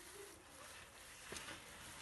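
Faint rustling of potting soil and a plastic glove as fingers loosen a houseplant's root ball, with a few soft clicks.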